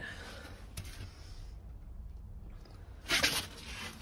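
Low, steady background rumble, with a short burst of hiss about three seconds in.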